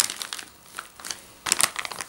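Plastic packaging, a clear sleeve and bubble wrap around a new tripod, crinkling as it is handled: faint rustling at first, then a burst of dense crackling from about one and a half seconds in.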